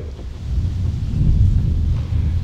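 Low, uneven rumble of wind buffeting an outdoor microphone, with little higher-pitched sound.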